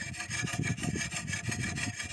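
A wetted sharpening stone rubbed back and forth in quick strokes along the bevel of a steel dodos blade, an oil-palm harvesting chisel, as it is honed.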